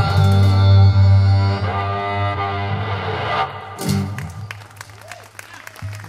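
Cello and acoustic guitar holding a sustained final chord, with a strong low bowed cello note, which cuts off about three and a half seconds in; a short last chord follows and dies away, leaving scattered sharp clicks.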